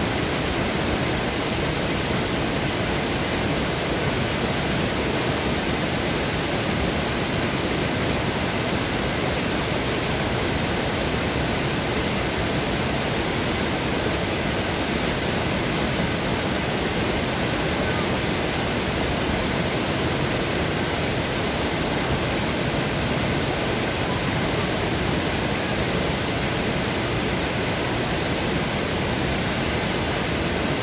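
Small waterfall pouring through a stone weir and over rocks into a pool, a steady rush of water.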